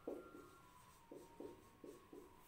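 Faint marker-pen strokes on a whiteboard as handwriting is written: about five short, separate scratchy strokes.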